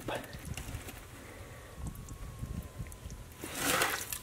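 A plastic bucket scooping water and soaked charcoal out of a barrel. It is quiet at first, then there is a brief splash of water near the end as the bucket is lifted.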